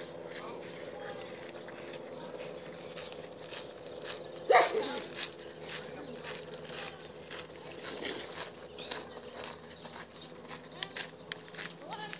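A handler's voice giving short cues to an agility dog over a steady low hum. One loud call about four and a half seconds in is the loudest sound.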